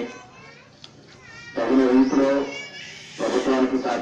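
A man's voice speaking in drawn-out phrases into a microphone and amplified over a public-address system. It pauses for about a second and a half at the start and again briefly past the middle.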